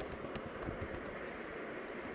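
Computer keyboard typing: a quick run of light keystrokes through about the first second, then only faint background hiss.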